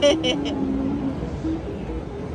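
Arcade din with a simple tune of held notes stepping up and down in pitch, after a brief burst of voice at the start.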